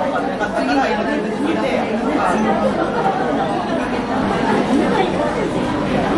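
Café hubbub: many overlapping conversations at once, a steady babble with no single voice standing out.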